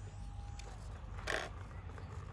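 E-flite UMX Timber's small electric motor whining thinly at low throttle, sliding down and cutting out less than a second in as the plane comes in to land. About a second later comes a brief scraping rush, with a low wind rumble on the microphone throughout.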